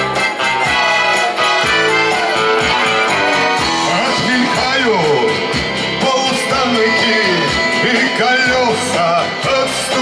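A song performed live: a man singing to his own acoustic guitar with upright double bass accompaniment, played steadily and loud.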